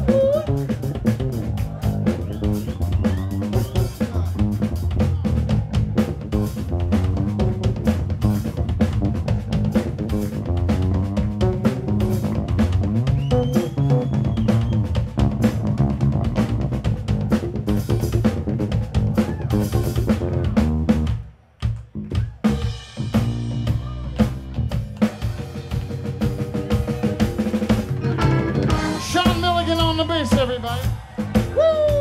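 Live blues band music: an electric bass guitar solo over a drum kit, with strong low bass notes and busy snare and kick hits. The music drops out briefly about two-thirds of the way through, then picks up again.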